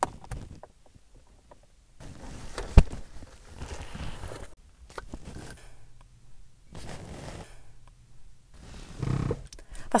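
Rustling and handling noises in a car cabin, in several short patches, with one sharp thump about three seconds in.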